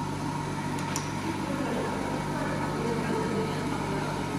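Semi-automatic auger powder filling machine running with a steady electrical hum, and a light click about a second in.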